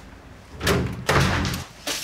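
A door being opened. The door is quiet at first, then about half a second in comes a loud clatter of the door, followed by a second, longer one.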